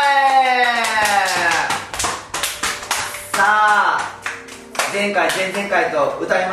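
Several people clapping their hands, with a long drawn-out male call falling in pitch over the first two seconds and a shorter call about three and a half seconds in.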